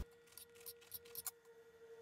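Near silence with a faint steady hum and a few faint crackling clicks in the first second and a half, from crusty baguette being handled.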